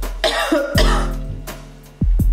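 A woman coughs near the start, over background music with a steady kick-drum beat.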